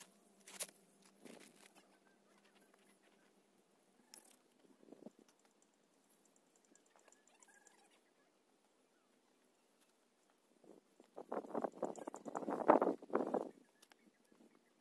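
Bricks being handled and moved in a garden bed. A few faint knocks come early, then a burst of rough scraping and knocking starts about eleven seconds in and lasts a couple of seconds.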